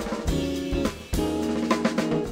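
Live jazz band playing an instrumental passage: drum kit hits over sustained electric piano chords and upright bass. The level drops briefly just before a loud accented hit about a second in.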